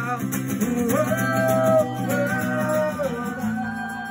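Live acoustic guitar with amplified singing: a few long held sung notes, then a last chord left ringing and fading away as the song ends.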